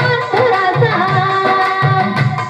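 A woman singing a melody through a microphone and PA, over a steady hand-drum beat.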